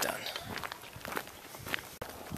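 A few quiet footsteps of a person walking on dry ground.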